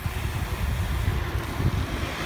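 Wind buffeting the microphone of a phone carried on a moving road bike: an uneven, gusty low rumble.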